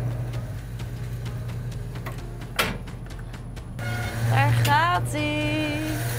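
Wooden paltrok wind sawmill starting up: its machinery running with a steady low hum and repeated knocks, one sharp knock about two and a half seconds in, as the frame saws begin to move while the mill is still running up to speed and not yet cutting.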